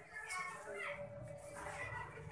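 Faint background voices talking, indistinct and well below the level of a nearby speaker.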